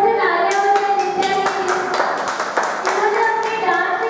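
Hand clapping, many sharp claps through the whole stretch, over a voice singing long held notes.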